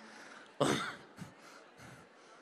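A single cough about half a second in, loud and close to a handheld microphone, over low hall noise.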